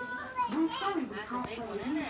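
Indistinct talking with high-pitched, childlike voices, with no clear words.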